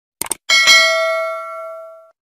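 Two quick mouse-click sound effects, then a bright bell ding that rings out and fades over about a second and a half: the notification-bell sound effect of an animated subscribe-button end card.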